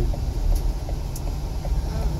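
Steady road and engine rumble heard from inside the cabin of a moving van.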